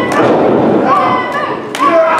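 Thuds of a pro wrestling bout in the ring: several impacts from bodies and blows, the loudest near the end, over shouting voices.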